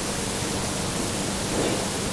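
Steady, even background hiss with no distinct events, in a short pause between phrases of a man's speech.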